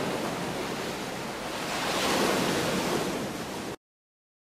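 Ocean surf washing on a beach, swelling about two seconds in, then cutting off suddenly near the end.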